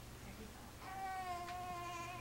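A six-month-old baby lets out one long, steady, high-pitched vocal squeal, starting about a second in and sagging slightly in pitch as it ends.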